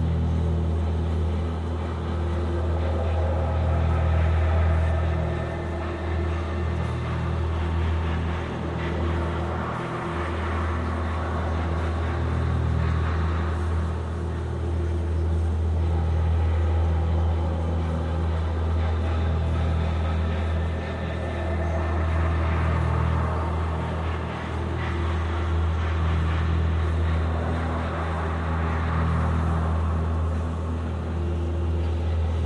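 Experimental electronic drone music: a heavy, steady bass drone under sustained tones that slowly swell and fade.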